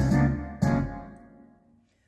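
Yamaha Genos 2 arranger keyboard playing a backing style through its speakers, then one last chord about half a second in that dies away to near silence just before the end.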